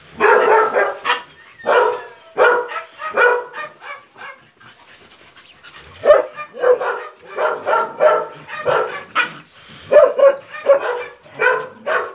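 Dogs barking in short, loud, repeated barks during rough play. One run of barks comes at the start, then a quieter stretch of a couple of seconds, then a second, faster run to the end.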